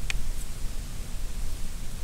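Wind rumbling and hissing on the microphone outdoors, with one faint click of handling just after the start.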